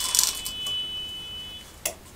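Clothes hangers sliding and scraping along a metal clothes rail as garments are pushed aside, loudest in the first half-second, with a sharp hanger click near the end. A steady high-pitched beep sounds through most of it and stops about three-quarters of the way in.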